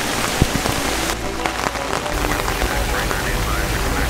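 Steady rain in a severe storm, falling hard and hitting plastic sheeting close by.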